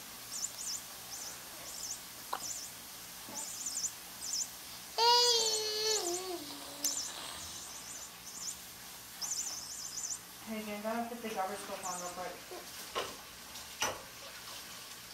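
Battery-powered flying mouse toy giving off its electronic squeak: clusters of quick, very high-pitched chirps that come and go. A drawn-out falling cry about five seconds in is the loudest sound, and a babbling voice follows near the eleventh second.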